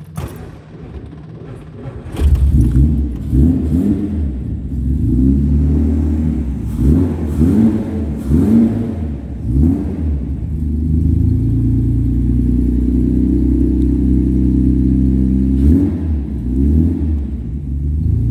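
1967 Austin-Healey engine being started: the starter cranks for about two seconds, the engine catches, and it is blipped through a series of revs before settling into a steady idle, with one more blip of the throttle near the end.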